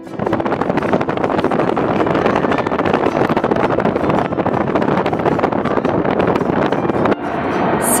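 Car travelling at highway speed: steady wind and road noise on the microphone, which changes abruptly about seven seconds in.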